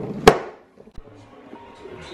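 A phone set down on a wooden coffee table makes a sharp knock about a third of a second in. Near the end, an iPhone's incoming-call ringtone starts faintly.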